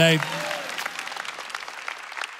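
Congregation applauding, a dense patter of clapping that gradually fades away.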